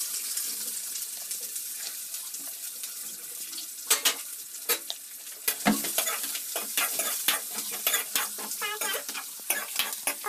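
Sliced onions frying in oil in a steel kadhai, a steady sizzle. From about four seconds in, a steel ladle clinks and scrapes against the pan as the onions are stirred.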